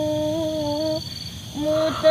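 A woman's voice holding a long, steady sung note, like humming or a drawn-out wail, that breaks off about a second in; a new note starts shortly before the end.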